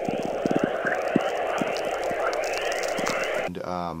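Radio static: a steady, muffled crackling hiss dense with sharp clicks, which cuts off suddenly about three and a half seconds in.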